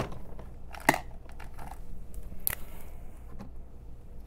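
Light handling noises with a few sharp clicks, the loudest at the very start: a metal hobby tool set down on a cutting mat, then the cap pulled off a felt-tip marker.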